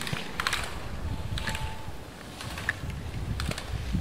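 Slalom gate poles knocked aside by a passing ski racer: a series of irregular sharp clacks, over a low rumble of wind on the microphone.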